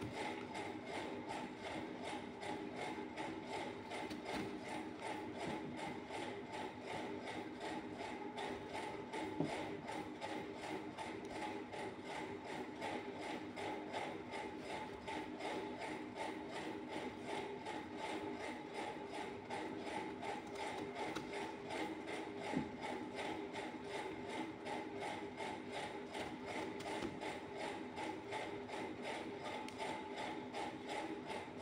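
Steady machine noise: a constant hum with a fast, even rattle. Two brief clicks stand out, about nine seconds in and again about twenty-two seconds in.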